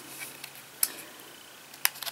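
Canon G7 X Mark II compact camera being handled, its small parts clicking: a few faint ticks, then two sharp clicks about a second apart.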